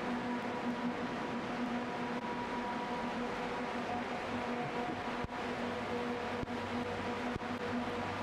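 Steady hum of the freezer room's refrigeration machinery, a few constant tones over a noise hiss, with a few faint ticks.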